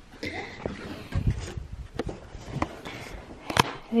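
Handling noise of a carpet being pulled up: scattered knocks, low thumps and rustles, with one sharp click near the end as the loudest sound.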